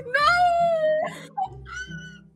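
A girl's high-pitched squeal, held for most of a second, then a shorter, higher squeak near the end.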